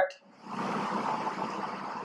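Felt-tip marker drawing on paper, a soft scratchy rubbing that starts about half a second in as the pen traces a small oval, then eases off.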